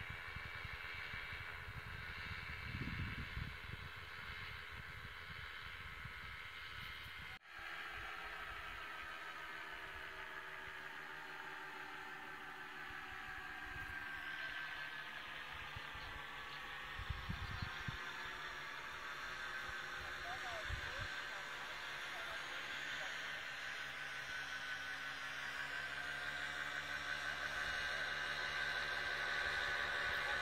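A paramotor's engine and propeller droning in flight overhead, a steady pitched hum whose pitch drifts slowly and which grows louder near the end. It cuts out for an instant about seven seconds in. Wind buffets the microphone at times.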